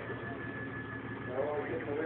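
Lifted 4x4 pickup truck's engine idling steadily while the truck is held with a front wheel up a travel ramp, with a thin steady high tone in the first part and a man's voice starting near the end.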